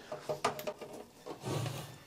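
Handling sounds at the back of a desktop PC case as the power cable is plugged back into the power supply: a short click about half a second in, then softer rubbing.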